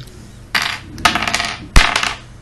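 Plastic Lego pieces being handled and set down on a wooden table: a short rattle about half a second in, a run of small clicks and clatter, then a sharp knock near the end, the loudest sound.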